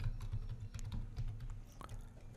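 Computer keyboard being typed: a quick run of light key clicks.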